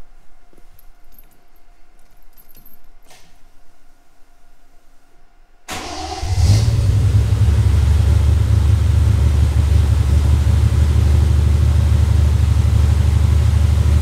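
Triumph TR6's 2.5-litre straight-six, converted to throttle-body fuel injection, fires right up about six seconds in after a few faint clicks. It settles into a steady high idle, high because the engine is cold.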